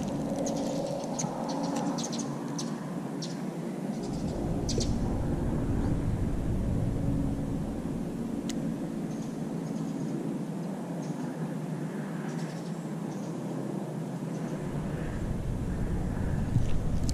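Steady low outdoor background rumble, with a few faint sharp clicks in the first five seconds and one more about midway.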